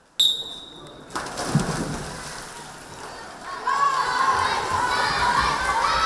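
A swimming-race start signal: a single steady high tone lasting about a second that cuts off sharply. Then swimmers splashing, and from about halfway through, many children shouting and cheering the swimmers on.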